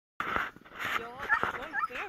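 A dog whining in short, rising and falling cries, with scuffing and rustling close to the microphone; the sound starts abruptly a moment in.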